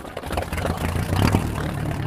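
Blimp's propeller engines droning steadily, with a light clatter over the low hum.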